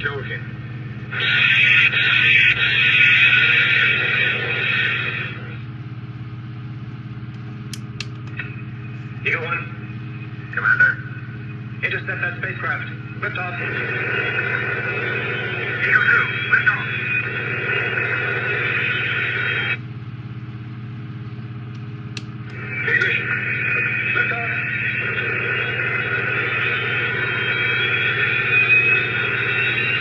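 Built-in speaker of an electronic Space: 1999 Alpha launch pad model playing Eagle spacecraft engine and launch sound effects: three long stretches of engine hiss over a steady low hum, the last with a slowly rising whine.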